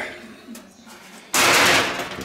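A sudden, loud clatter of thin sheet steel lasting about half a second, as an old rusted car body panel is laid down onto a steel replacement sheet.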